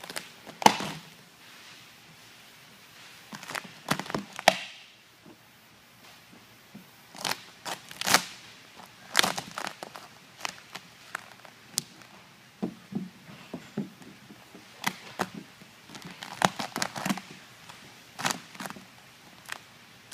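3M air-release vinyl wrap film being lifted, stretched and pressed down onto a car hood by hand. It crinkles and snaps in irregular sharp crackles, some close together, with quieter gaps between them.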